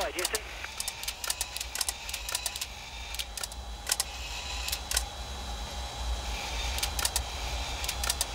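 Crackling radio-link static, with irregular sharp clicks over a steady low hum and hiss, on the crew's communications audio during the satellite deploy.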